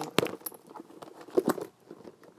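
Handling of a leather handbag with metal hardware as it is opened to show the inside: two sharp clicks, one just after the start and one about a second and a half in, with light rustling and jingling between them.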